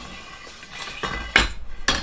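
Aluminum roof-rack crossbar knocking against its metal mounting brackets as it is set in place: two sharp clanks, one about a second and a half in and a louder one near the end.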